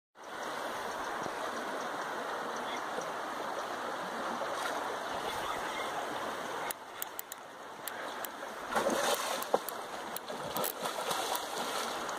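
River water rushing steadily over rocks. A few sharp clicks come about seven seconds in, followed by louder, irregular bursts of noise.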